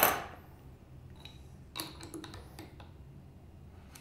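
Wire cutters snipping off a steel guitar string end at the tuning post: one sharp metallic snap with a brief ring right at the start, then faint handling sounds.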